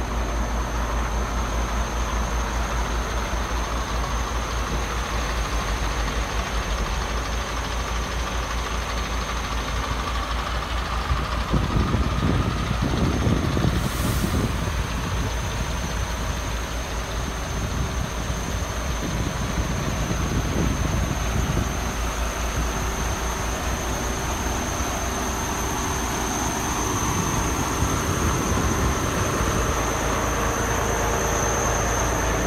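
Diesel engine of a MAN TGX 26.480 truck idling steadily. Irregular low rumbling, likely wind or handling on the microphone, rises in the middle.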